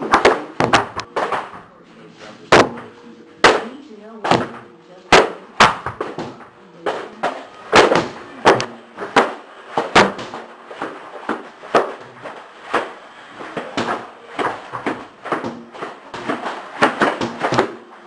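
Repeated sharp hits and smacks from a conditioning workout, coming irregularly about once or twice a second, with voices talking and calling underneath.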